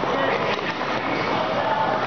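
Steady din of a busy indoor ice rink, with other people's voices in the background.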